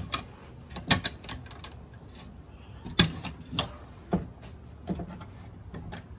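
Metal folding shelf brackets clicking and a plywood tabletop knocking against a van panel as it is folded up and down, in about seven sharp knocks a second or so apart.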